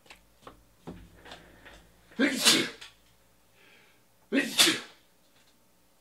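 A man sneezing twice, about two seconds apart, each a short loud burst; light clicks of trading cards being handled come just before.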